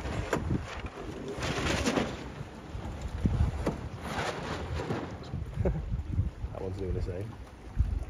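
Wind rumbling on the phone's microphone at the waterside, with louder rushing gusts about a second and a half in and again around four seconds. Faint voices are heard near the end.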